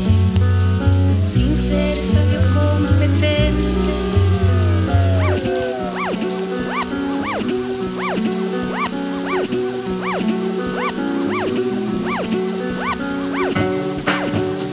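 Background music with no singing. A heavy bass line pulses for the first five seconds or so, then drops out, leaving short high notes that swoop up and down about twice a second over sustained notes.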